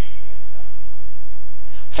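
A pause in a man's speech filled by a steady low hum; his speech starts again right at the end.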